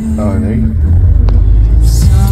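A car's cabin rumble, loud and deep, swelling from about a second in, after a brief voice at the start; music starts up near the end.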